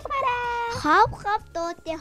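A high-pitched, cartoon-like voice holds one long drawn-out note for about a second, rising at the end, then says a few short quick syllables.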